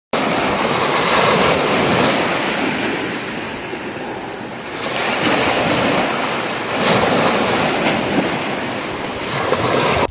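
Ocean surf washing up on a sandy beach, a steady rush that surges about a second in, around five seconds and again around seven seconds. A run of quick, high chirps sounds through the middle.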